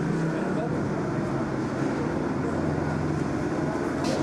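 Many people talking at once in a crowded room, a continuous babble, over a steady low hum.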